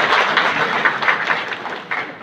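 An audience applauding: many hands clapping together, dying away over the last second.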